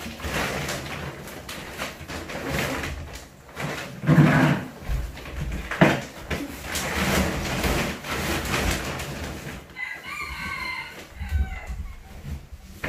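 Rustling and bumping of large woven plastic storage bags being hoisted and pushed onto a wooden wardrobe, with two louder knocks in the middle. Near the end a rooster crows once, briefly.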